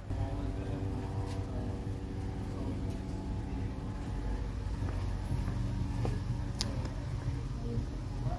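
A steady mechanical hum of a running machine, holding one pitch throughout, with a couple of faint sharp clicks.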